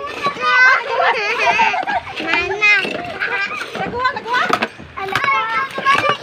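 A crowd of children's and adults' voices shouting and chattering over one another, several high-pitched voices at once with no single clear speaker.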